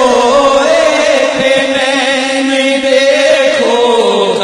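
Male voice chanting a naat, an Urdu devotional recitation, in long, held, slowly wavering notes with no clear words.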